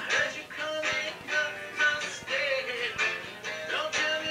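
A man singing a song with strummed guitar accompaniment.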